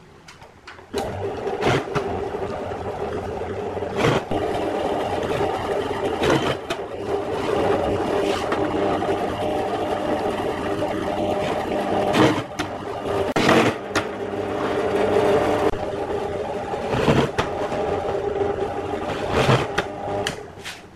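Bench drill press motor running steadily, starting about a second in, with several short cutting bursts as a countersink bit bores into plywood.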